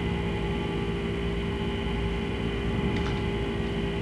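Steady electrical hum and hiss of the room and recording during a pause in speech, with a faint tick about three seconds in.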